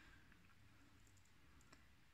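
Near silence, with a few faint light clicks from a metal crochet hook working cotton yarn.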